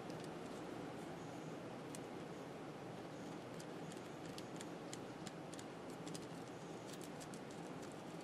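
Faint, scattered light ticks and scratches of hands and a pen working over a rubbery non-slip shelf liner as it is marked for a slit, over a steady low hiss.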